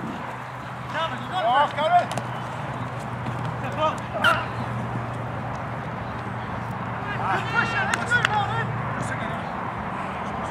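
Raised voices shouting in high-pitched calls across an open sports field, in three short bouts: near the start, at the middle and about three-quarters through. A steady outdoor background noise runs underneath.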